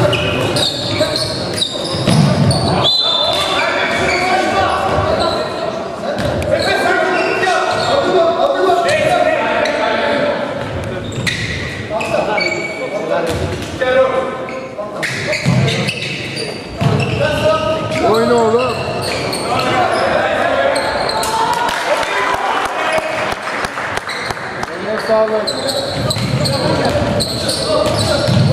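Sounds of a basketball game in a large gym: a basketball bouncing on the hardwood court, with indistinct voices of players and spectators calling out throughout.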